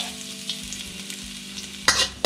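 Chopped garlic sizzling in hot oil in a carbon-steel wok, with a steady hiss and a few light crackles. Near the end a metal spatula knocks and scrapes loudly against the wok as the stirring starts.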